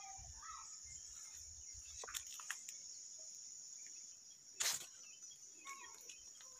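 A steady, high-pitched insect chorus in a field, with a few faint bird chirps and a brief burst of noise late on.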